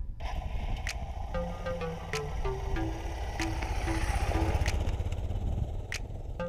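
Background music with a stepped melody of short notes, over a Suzuki DR650's single-cylinder engine running as the bike pulls away. The engine grows louder about four seconds in.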